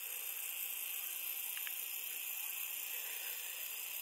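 Faint, steady high hiss of background noise with no distinct sound in it, and a couple of tiny clicks about one and a half seconds in.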